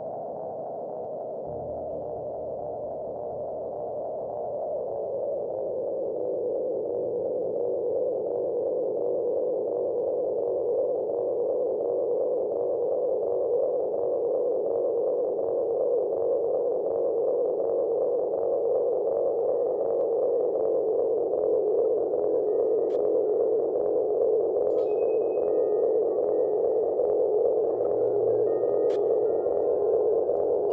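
Synthesizer drone from a live electronic set: a cluster of steady, pure mid-pitched tones that slide a little lower and swell louder over the first several seconds, then hold. Faint short high bleeps and a couple of clicks come in over the second half.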